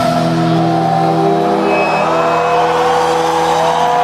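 Live rock band playing loudly in an arena: held low notes under a high line that slides upward in pitch.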